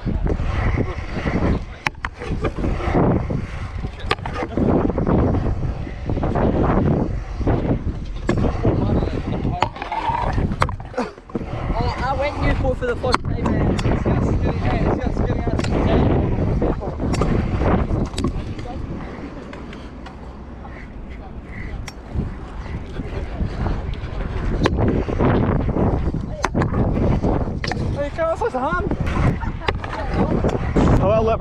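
Wind buffeting a camera microphone, with scooter wheels rolling on concrete and scattered sharp knocks from riding, and voices at times. It drops quieter for a few seconds past the middle.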